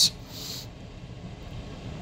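A pause in the talk: a soft hiss at the very start, then only a low, steady background rumble of shop noise.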